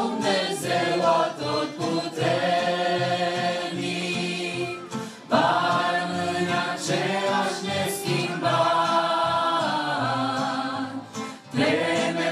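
Group of women singers singing a Romanian worship song together through microphones and church loudspeakers, with a saxophone accompanying. Long held notes, with short breaks between phrases about five and eleven seconds in.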